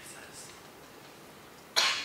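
A single sharp cough near the end, over quiet room tone.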